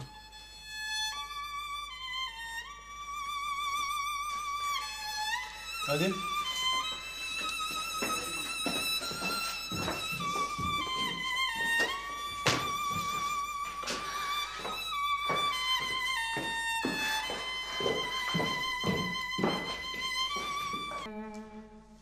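Background score with a violin playing a slow melody of held notes with vibrato, over short, sharp accompanying notes. It stops about a second before the end.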